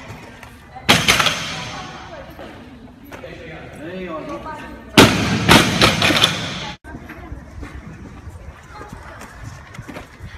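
A loaded barbell with bumper plates dropped onto a wooden lifting platform twice: a crash with rattling about a second in, then a louder crash about five seconds in that rattles on briefly before cutting off.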